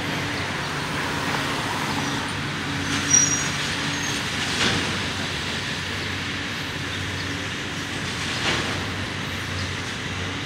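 A heavy engine running steadily over a background of street noise. Its hum fades after about four and a half seconds. A brief high squeal comes about three seconds in, and a couple of faint knocks follow later.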